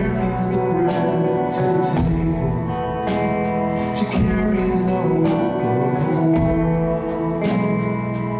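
Live music: an acoustic guitar strummed and picked through held chords.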